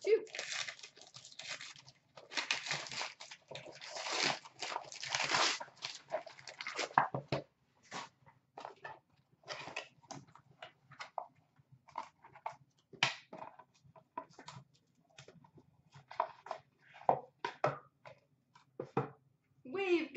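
Gold wrapping paper being torn and crumpled off a trading-card box, a run of loud rustling rips over the first several seconds. After that come scattered light taps and rustles as the cardboard box is opened and the cards are handled.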